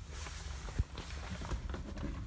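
Light knocks and rustles from someone moving about inside a pickup truck's cab over a low rumble, with one sharper knock a little under a second in.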